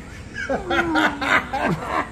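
Two men laughing, starting about half a second in.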